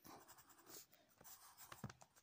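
Faint scratching of a graphite pencil writing on workbook paper: a few short strokes, with a small tap near the end.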